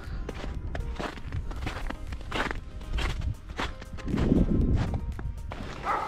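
Footsteps of a person walking at a steady pace, about two steps a second, with faint music underneath.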